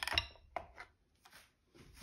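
Hard plastic knocking and scraping as the tiller handle is slid out of the trolling motor's open plastic head: a louder clatter at the start, then a few faint clicks.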